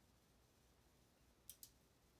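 Near silence: faint room tone, broken by two quick, sharp clicks in close succession about one and a half seconds in.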